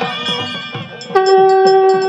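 Conch shell (shankh) blown during the aarti, starting sharply about a second in and holding one steady horn-like note. Under it runs a quick, regular beat of devotional drumming, and before the conch the music with singing fades out.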